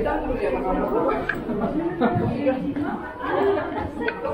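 Indistinct chatter: several people talking at once, with no clear words.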